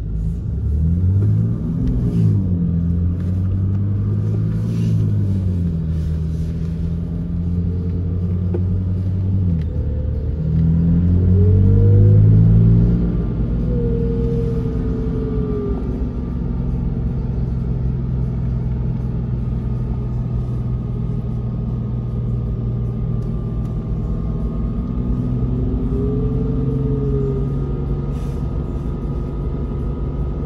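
BMW S55 twin-turbo inline-six, heard from inside the cabin, running at light load as the car is driven slowly: it revs up and back down a few times in the first dozen seconds, loudest just after ten seconds in, then holds a steady drone at around 2,800 rpm.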